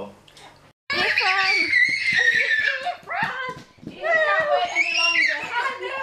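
Excited, high-pitched voices of a woman and a toddler, with no clear words, in two long stretches starting about a second in after a brief dropout.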